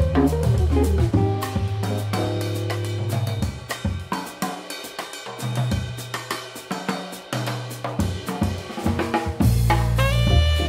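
Jazz drum kit played hard on snare, bass drum, hi-hat and cymbals, over an organ bass line and guitar for the first few seconds. The bass then drops out and the drums carry on mostly alone. The full band of organ, guitar and saxophone comes back in near the end.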